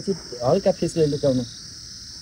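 A person's voice for about the first second and a half, then only a steady, high-pitched insect chorus of crickets that runs underneath throughout.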